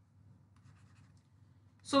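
Faint scratching of a stylus writing on a tablet, in short scattered strokes during the first half, then a woman starts speaking just before the end.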